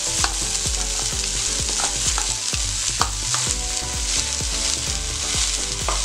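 Chopped fenugreek (methi) leaves frying in hot ghee with onions in a stainless steel kadhai: a steady sizzle, with scattered clicks of stirring against the pan.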